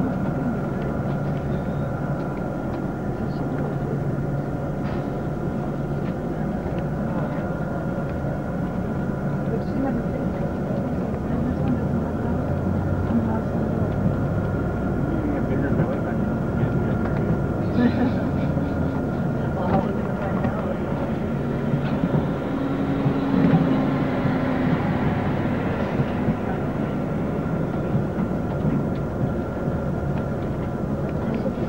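Steady engine and road noise heard from inside a moving vehicle's cabin: a constant drone with a few steady humming tones, and faint voices now and then.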